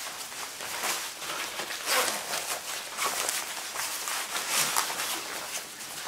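Army Gore-Tex shell jacket fabric rustling in a series of short swishes as the hood is pulled up and the collar closed over the face.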